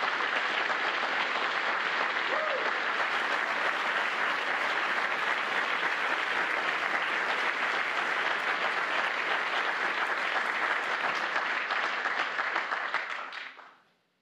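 Audience applauding steadily in a large room, the applause dying away near the end.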